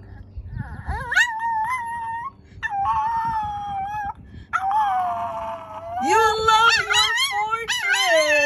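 Small dog howling in long, drawn-out, wavering notes: several howls of a second or more with short breaks between them, and a lower voice joining in near the end.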